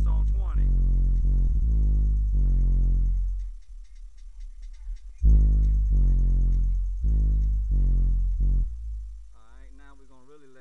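Car stereo playing music loudly inside the car: a run of long, deep bass notes with a voice over them. The bass drops out for about a second and a half in the middle, then returns. Near the end the volume is turned down and the music fades.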